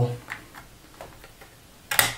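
Faint clicks and taps of a laptop SO-DIMM memory module being slid into its slot at an angle, with a sharper click just before the end.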